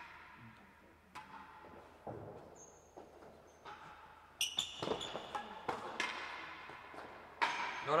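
Real tennis rally: the hard ball struck by rackets and knocking off the walls and floor, a string of separate knocks, irregularly spaced, that echo in the high hall and bunch together about halfway through.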